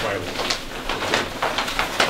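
Large paper plan sheets rustling and crinkling in a series of short, uneven swishes as they are handled and unrolled, with low voices murmuring underneath.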